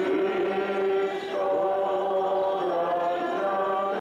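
A congregation singing a hymn together in the open air, with long held notes. The singing cuts off abruptly at the end.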